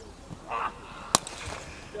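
Cricket bat striking a leather cricket ball: one sharp crack about a second in, a clean big hit that carries for six.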